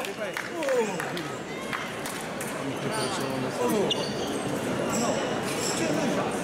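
Voices and shouts echoing through a large indoor arena, with scattered light knocks over the hall's background noise.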